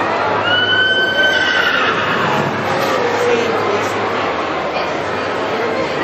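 A horse whinnying: one long high call starting about half a second in, held briefly then falling in pitch, ending in a lower note around three seconds in, over people talking.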